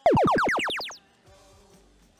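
FRC Power Up field sound effect: a burst of rapidly falling electronic pitch sweeps that starts abruptly and fades out after about a second, the cue played when an alliance activates a power-up.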